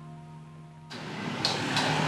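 A held chord of background music fading out, then about a second in an abrupt cut to busy street noise with passing traffic, growing louder.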